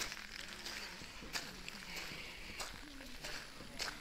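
Faint voices talking in the background, with a few soft footsteps on wet ground.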